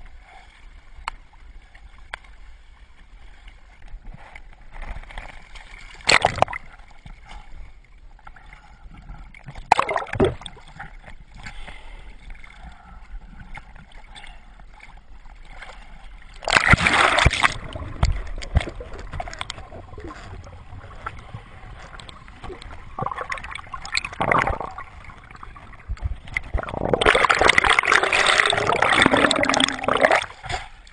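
Sea water lapping and gurgling around a kayak, heard from a camera at the waterline, with sharp splashes a few times and a louder, longer rush of water near the end as the camera dips into the water.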